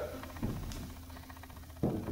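Faint handling noise from a Fluke tenor ukulele being carried off, with two soft thumps, one about half a second in and one near the end.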